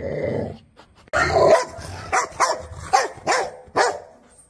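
Small fluffy white dog growling briefly, then after a short pause giving a run of short, high yapping barks, about five in quick succession.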